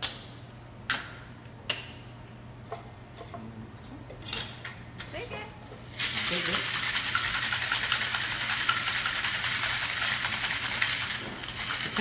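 Cocktail shaker being shaken hard: a dense rattle that starts suddenly about halfway through and runs for about five seconds. Before it, a few sharp single clicks.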